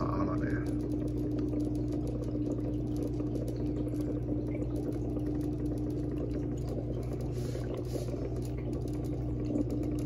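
Aquarium filter running: a steady electrical hum over a light wash of moving water. A higher tone in the hum drops out for a few seconds near the end, then returns.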